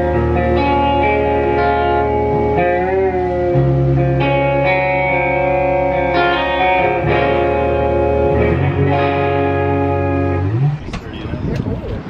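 White SG-style electric guitar with freshly fitted strings, played through an amplifier: loud sustained chords changing every second or two, with one bent, wavering chord about three seconds in. The playing stops shortly before the end, and wind noise on the microphone follows.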